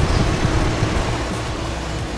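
A steady low rumble with background music.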